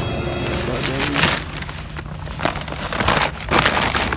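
Plastic tarp rustling and crinkling in several irregular bursts as it is handled and folded back off a kayak.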